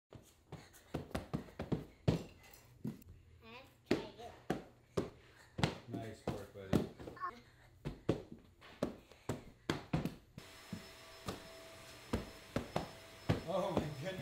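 Bare feet thudding in quick, irregular hops as small children jump on one leg along low balance beams and rubber gym flooring, with short bursts of a child's voice between landings. The thuds thin out near the end, over a faint steady hum.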